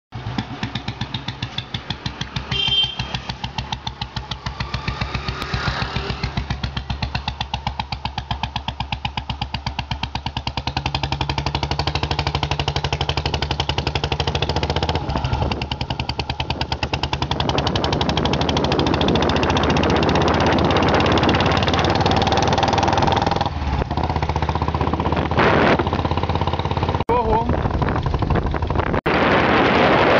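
Royal Enfield single-cylinder motorcycle engine running with an even, rapid train of thumps, growing louder through the second half as the bike moves off.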